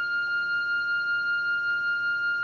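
Organ holding a single high note, its loudness wavering evenly about five times a second.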